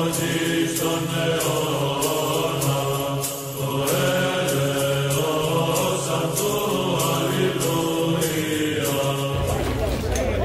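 Solemn choral chant over a low sustained drone, with a steady beat of light percussion hits. Near the end the music cuts off abruptly to outdoor crowd noise and voices.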